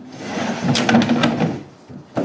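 A 300-litre plastic ice box being dragged and swivelled across a wooden pallet: a rough scraping lasting about a second and a half, with a few knocks in the middle.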